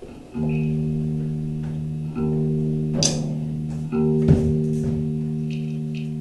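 Guitar playing slow, sustained chords: three chords struck about two seconds apart, each left to ring and fade, with a couple of sharp clicks in between.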